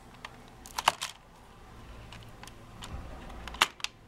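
Sharp clicks of LEGO plastic parts as the saw-blade trap is worked by hand: a cluster of clicks about a second in and another near the end.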